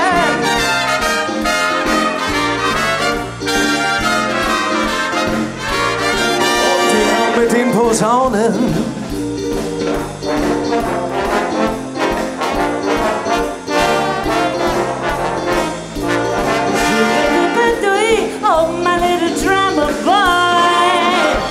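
Police brass band playing an upbeat number: trumpets, trombones, saxophones and tubas over a steady walking bass line, with a swooping glide in pitch about eight seconds in.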